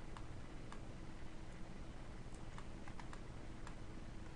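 Scattered light clicks of a computer mouse and keyboard, a few spread out and a quick cluster about two and a half to three seconds in, over a steady low electrical hum.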